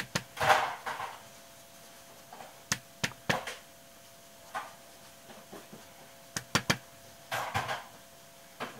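Ink blending tool being loaded on an ink pad and dabbed and swiped over a crackle-textured canvas: sharp clicks and taps, a quick cluster of three near the end, with short brushing swishes in between.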